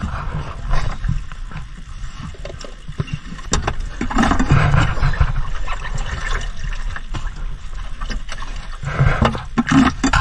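Fresh fish being scooped by hand from a styrofoam fish box into a plastic basin: wet slaps and slithering of fish with irregular knocks and clicks of the plastic, over a steady low hum.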